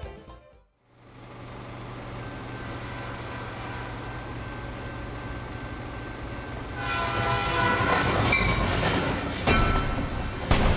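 Train sound effect: a steady low rumble of an oncoming train builds up after the end of the theme music. From about seven seconds in it grows louder and a train horn sounds over it, with a sudden louder swell near the end.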